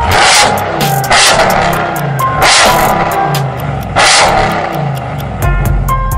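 Supercharged 6.2-litre V8 of a 2022 Ram TRX with headers and straight-pipe exhaust being revved hard, four sharp revs each dying away, over a music track. A heavy bass beat comes back in near the end.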